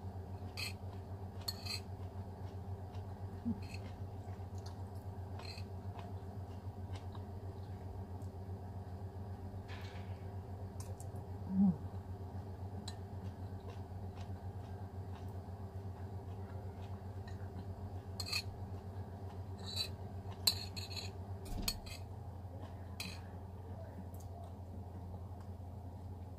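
Metal spoon clinking and scraping against a ceramic plate now and then while eating, over a steady low hum. The clicks are short and scattered, coming more often near the end.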